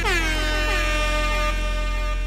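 Electronic closing effect at the end of a chutney music track: a held tone over a deep, steady bass drone, with quick downward pitch sweeps repeating and echoing away.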